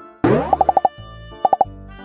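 Cartoon-style editing sound effects over light background music: a rising swoosh, then a quick run of five short pops and, a moment later, three more pops.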